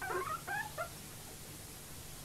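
Guinea pig giving a few short, high squeaks in the first second as it is picked up out of its tank.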